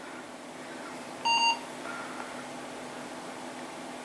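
A single short beep from an HP Compaq desktop PC's internal speaker during its power-on self-test, about a second in, over the steady hum of the running computer.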